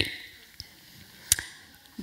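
A pause in speech: faint room tone through a headset microphone, broken by one short, sharp click about a second and a half in.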